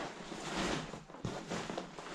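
Rustling handling noise as a fabric wing bag is gripped and moved around cardboard, with a short sharp knock about a second in.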